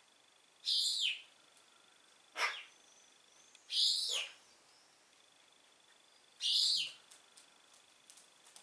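Feral pigeons giving high-pitched squeaking calls: three calls of about half a second each, roughly three seconds apart, each dropping in pitch at the end, with a shorter squeak sweeping down in between.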